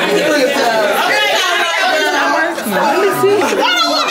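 Several people talking over one another at once: steady, overlapping chatter in a crowded room.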